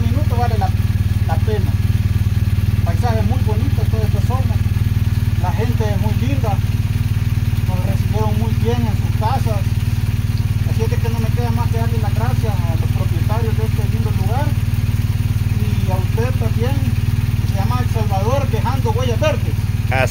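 People talking over the steady low running of an idling motorcycle engine.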